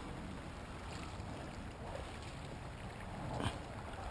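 Shallow creek water being stirred and splashed by hands and a dip net while wading, with wind buffeting the microphone. A short, sharper splash or knock comes about three and a half seconds in.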